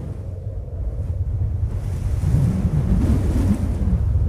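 A rushing, surf-like wash of noise with a deep rumble, swelling gradually louder, like ocean waves and wind.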